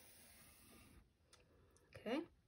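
Near silence: a faint pencil stroke on paper as a long curved line is drawn, stopping about a second in, then a couple of faint clicks.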